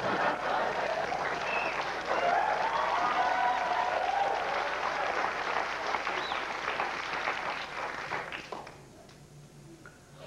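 Studio audience applauding, with some voices mixed in; the applause dies away about eight and a half seconds in.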